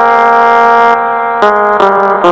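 Casio SA-11 electronic mini keyboard playing a melody one note at a time: a note held for over a second, then two shorter notes.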